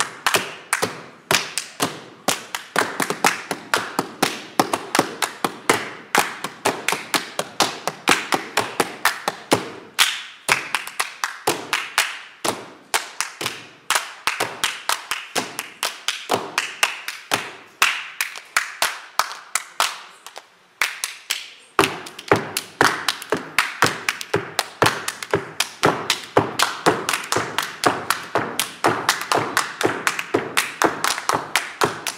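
Tap dancing: several dancers' tap shoes striking the stage floor in rapid, dense rhythms, mixed with hand claps and hand slaps on the floor. The taps thin out and stop briefly about two-thirds of the way through, then resume just as densely.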